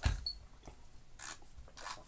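Hand coffee grinder being handled as its crank handle is fitted back onto the shaft: a knock at the start, then two short rubbing scrapes of the metal parts in the second half.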